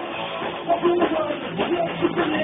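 Live rock band playing: electric guitars over drums, with regular drum hits. The recording is muffled and lo-fi, cut off in the treble.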